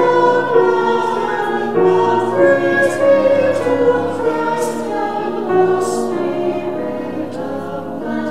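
A group of voices singing a slow sacred song together, with long held notes.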